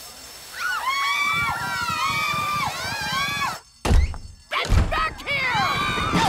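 Cartoon voices whooping and cheering together, cut off abruptly, followed by two heavy thuds about a second apart and then startled yells.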